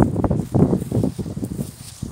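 Footsteps swishing through dry, tall grass: a quick, uneven run of rustling steps.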